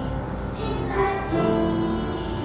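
Church choir of adults and children singing a hymn in parts, holding sustained notes, with a new chord about a second in.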